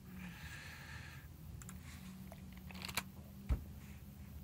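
A few faint computer keyboard keystrokes, sharp single clicks in the second half, typing a terminal command, over a low steady hum.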